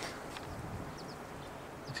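Quiet open-air ambience with a few faint, short high chirps scattered through it.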